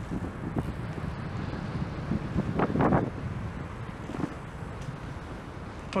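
Wind rumbling on the microphone of a bicycle-mounted action camera while riding, a steady low noise, with a brief louder burst of noise about halfway through.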